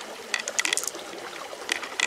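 Pearls clicking against one another and against the shell as a hand picks them out of an opened mussel: a quick run of small clicks about a third of a second in, and a few more near the end.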